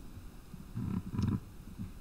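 A woman's low, muttered "oh" close to the microphone, about a second in.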